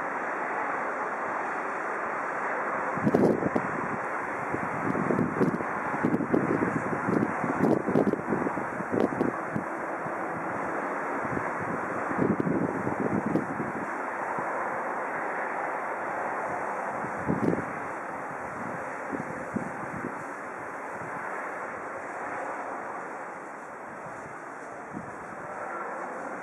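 Wind on the microphone: a steady rushing noise with irregular louder gusts, mostly in the first two-thirds, then easing off.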